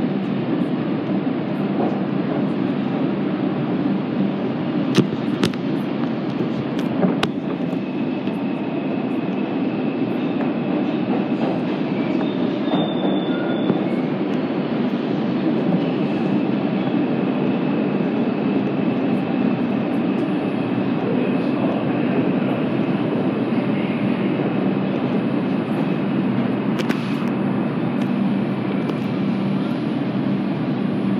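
A Bombardier R142 subway train running through the tunnel and into a station, heard from inside the car: a steady rumble of wheels on rail. Two sharp clicks come about five and seven seconds in, and a faint, thin, high whine runs from about eight seconds until near the end.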